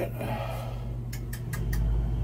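A boiler starting up once the low water cutoff's end switch is jumped out: a few sharp clicks about a second in, then a low hum swells as a motor comes on. The start-up is a sign that the failed low water cutoff was all that was holding the boiler off.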